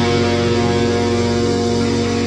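Pop-punk music with an electric guitar chord held and ringing out, with no new strums or drum hits.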